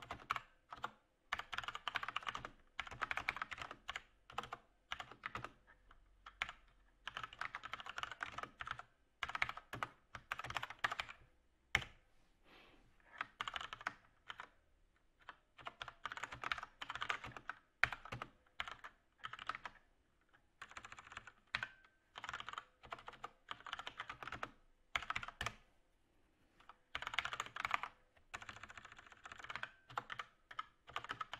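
Computer keyboard being typed on in quick runs of keystrokes separated by short pauses.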